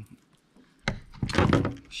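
Handling noise on a plastic kayak: a sharp click about a second in, then a short burst of knocking and rubbing as the catch and lure are handled in the lap.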